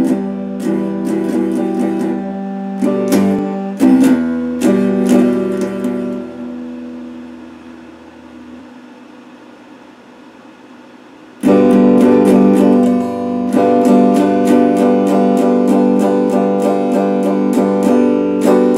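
Electric guitar played with a pick: a run of picked notes and chords, then one chord left ringing and slowly dying away from about six seconds in. Just after eleven seconds the playing starts again suddenly at full volume with quick, evenly picked notes.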